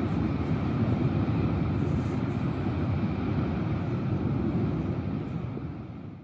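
Lava fountain roaring at Kīlauea's summit vent: a steady low rumble that fades out near the end.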